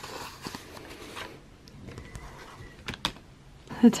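Faint handling noise: a scattering of light clicks and taps over a quiet room hiss, a little louder around three seconds in.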